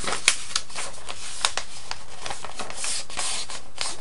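Steady recording hiss with scattered light ticks and scratches, a few of them sharper.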